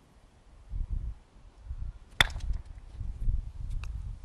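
A croquet mallet striking a ball once, a single sharp crack about two seconds in, over a low background rumble. A fainter click follows near the end.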